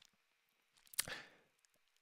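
Near silence, broken about a second in by a short mouth click and a quick soft intake of breath at a close microphone.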